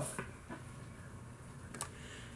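Quiet room tone with light handling clicks from the plastic cabinet of a cassette recorder as it is held and tilted: a faint one just after the start and a sharper one near the end.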